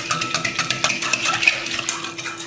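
A spring-coil hand whisk clicking rapidly against the sides of a glass bowl as it stirs a thin liquid yeast mixture, with a steady tone running underneath.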